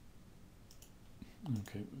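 A few faint computer mouse clicks, about a second apart.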